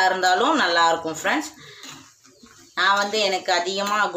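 A woman talking, pausing for about a second and a half in the middle.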